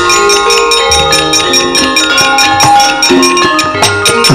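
Javanese gamelan playing: bronze metallophones and gongs ringing in sustained tones, with a fast, even clicking above them and a few drum strokes that drop in pitch.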